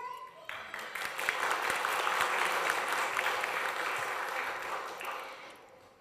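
Audience applauding: the clapping starts about half a second in and fades out just before the end.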